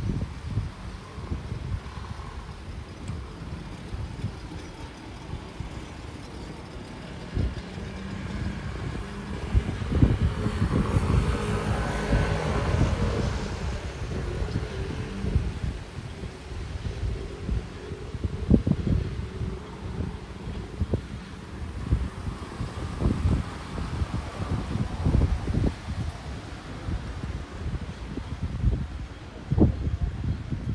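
Wind buffeting the microphone with a low rumble throughout, and a car passing on the road, its tyre and engine noise swelling about ten seconds in and fading away within a few seconds.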